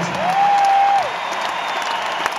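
Arena concert crowd applauding and cheering as the show ends, with one long whistle from the audience that slides up, holds steady and drops off about a second in.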